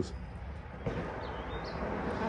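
Quiet creekside ambience: a soft, steady hiss that swells slightly about a second in, with one faint, brief bird chirp.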